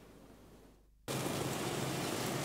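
Near silence for about a second, then steady street traffic noise cuts in abruptly.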